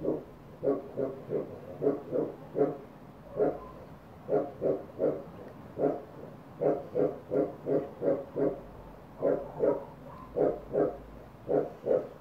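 Short grunt-like calls, about three a second, in clusters with brief pauses, typical of an animal.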